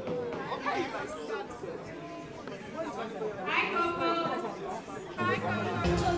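A crowd of party guests talking over one another in a large hall, a busy chatter with no single voice standing out. Music with a steady bass starts up near the end.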